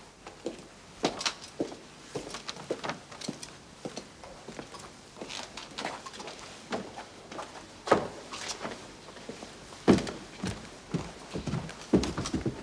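Several people's footsteps going up a staircase and across a landing, a run of uneven knocks and taps, with two louder thumps about two-thirds of the way in and near the end.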